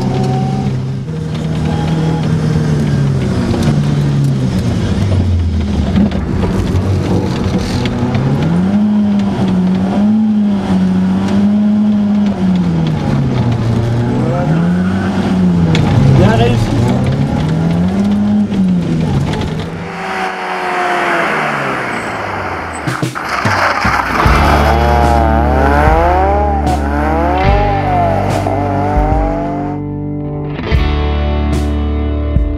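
Ford Sierra RS Cosworth's turbocharged four-cylinder engine heard from inside the cabin, revving up and dropping back again and again as the car is driven hard through the gears. From about six seconds before the end the engine sound becomes denser, its pitch wavering rapidly.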